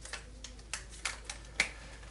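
Dry-erase markers being handled and one uncapped: about six short, sharp plastic clicks, the loudest near the end.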